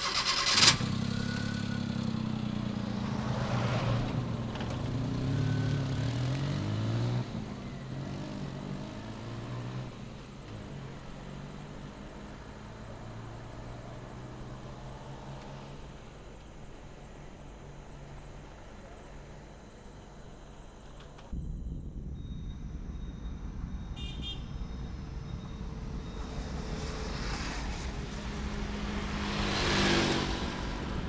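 A van pulls away: a thud at the start, then the engine revs up and settles into a steady run. About 21 seconds in, the sound switches to a louder, low road rumble of the van driving on, swelling near the end.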